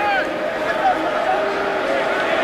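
Stadium crowd noise from a football game heard through a TV broadcast: many voices shouting and calling at once, with a more sustained crowd tone building near the end.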